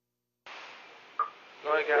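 VHF marine radio receiver going from dead silence to an incoming transmission: about half a second in the channel opens with a steady radio hiss, a short blip sounds a little past one second, and a man's voice comes in near the end.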